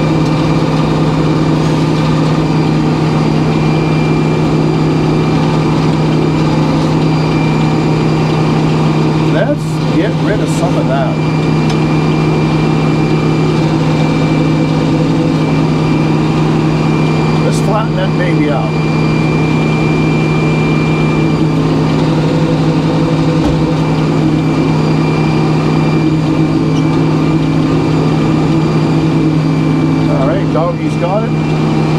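A sawmill's engine running steadily at constant speed, with a thin steady high whine over its note. Brief wavering sounds rise out of it about a third of the way in and again past halfway.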